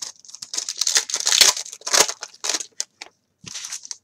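Foil trading-card pack wrapper being torn open and crinkled by hand: a run of crackling rustles, loudest about halfway through, with a short pause near the end.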